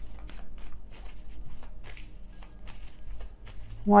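A tarot deck being shuffled by hand: a quick, irregular run of soft card flicks, quieter than the voice.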